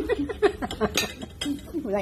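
Metal forks clinking against ceramic plates and bowls at a dining table, a few sharp clinks over people talking.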